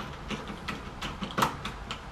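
Hose clamp being tightened around a PVC pipe with a nut driver: a run of small irregular clicks and ticks as the clamp screw is turned, with one sharper click about one and a half seconds in.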